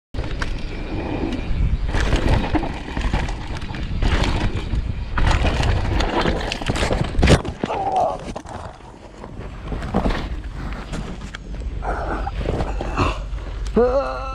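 Mountain bike ridden over rough, rocky ground, heard from a helmet-mounted camera: wind buffeting the microphone and the bike rattling, with a few sharp knocks. A short voice comes in near the end.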